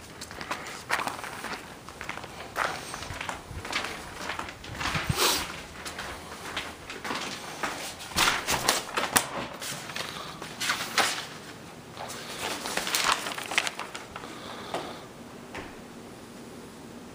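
Footsteps and an irregular run of clicks, knocks and rattles as a house's front door is opened and walked through, the knocks thickest about eight to nine seconds in.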